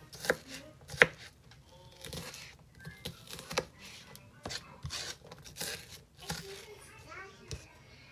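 Kitchen knife chopping onion on a plastic cutting board: irregular sharp strikes of the blade against the board, the loudest about a second in.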